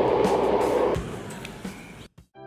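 Rushing noise of an electric skateboard rolling fast along the street, which starts suddenly, stays loud for about a second, then fades away.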